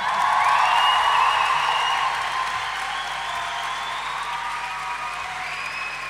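Concert audience applauding and cheering at the end of a song, loudest at the start and slowly easing off.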